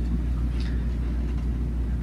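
A steady low hum in the room, between stretches of speech.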